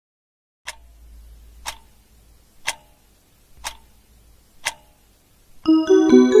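Five sharp ticks, one a second, counting down to the hour. Then, just before the end, the Seiko BC412W digital clock's electronic chime melody starts as the display turns over to the top of the hour.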